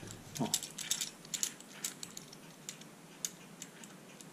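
Key being worked in an EVVA 4KS modular door cylinder: a run of small, irregular metallic clicks as the cylinder's key-verification mechanism reads the key.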